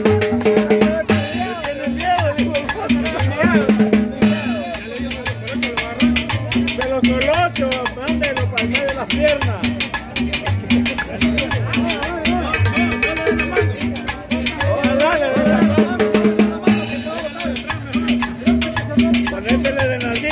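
Salsa-style Latin dance music from a live combo band, with a steady drum beat and percussion under a wavering melody.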